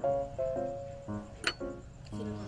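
Background music: a light plucked-string tune, one steady note after another. A single sharp clink sounds about halfway through.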